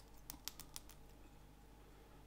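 Near silence with a quick run of about six faint, light clicks in the first second, from thread wrapping and small tools being handled while tying a foam-bodied fly.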